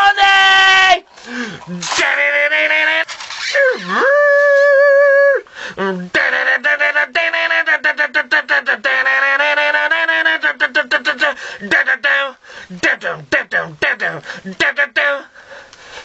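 A man's loud rock vocals, sung and shouted in a small room, with one long wavering held note about four seconds in. Fast, regular sharp strokes of the accompaniment run under the voice and grow denser in the second half.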